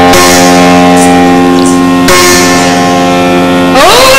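A Yakshagana performer's voice holds one long steady note, breaks off briefly about halfway, then slides sharply upward in pitch near the end.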